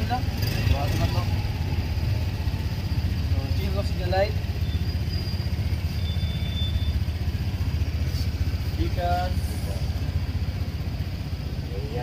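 Honda Beat scooter's single-cylinder engine idling, a steady low hum.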